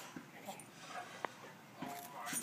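A small dog faintly whimpering, with a few soft clicks.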